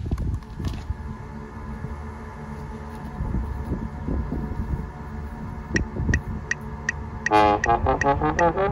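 Low rumble of traffic and wind, then a steady ticking starts, about three ticks a second. Near the end a trombone comes in loudly with its first notes.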